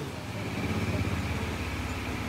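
A steady, low mechanical hum from a running motor, with a fast even pulse and a faint high steady tone above it.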